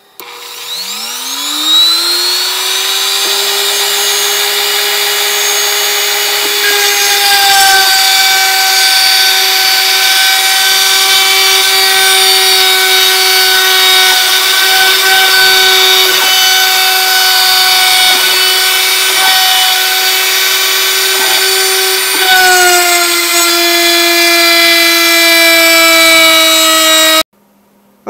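Router spindle on a homemade CNC machine spinning up with a rising whine, then running steadily as its small bit cuts slat grooves into a wooden coaster top. The pitch drops slightly a little after three-quarters of the way through, and the sound cuts off suddenly near the end.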